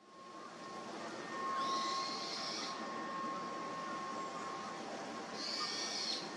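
Outdoor ambience fading in: a steady background hiss with a faint thin high tone, and a small bird chirping twice, once about a second and a half in and again near the end.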